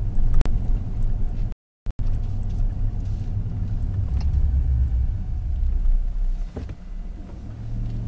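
Low, steady rumble of a car heard from inside its cabin, with the sound cutting out completely for a moment about a second and a half in.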